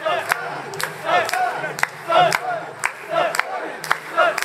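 Crowd of mikoshi bearers chanting a rhythmic call in unison, about once a second, as they carry a portable shrine, with sharp clicks about every half second.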